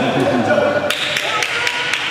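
Badminton rackets striking a shuttlecock in a fast rally: sharp taps, one faint early and then several in quick succession in the second half, over the chatter of voices in a large hall.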